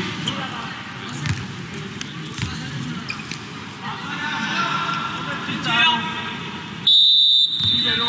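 Sports-hall crowd chatter with a few ball bounces, then a referee's whistle blown once near the end: a single shrill tone of about half a second, the loudest sound here.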